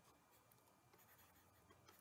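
Near silence: faint room tone with a few tiny ticks from a pen writing on a tablet.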